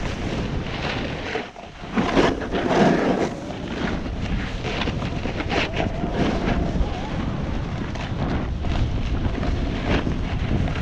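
Wind rushing over the microphone with the scrape of a snowboard's edges over packed groomed snow as it carves downhill. After a short lull about a second and a half in, a louder scrape follows.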